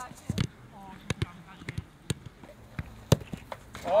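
Football being kicked and passed on an artificial-turf pitch: a string of sharp, unevenly spaced thuds, the loudest about three seconds in.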